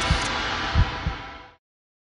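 Sports programme ident sting: a wash of whooshing noise over deep thumps coming in pairs like a heartbeat, fading out about one and a half seconds in, then silence.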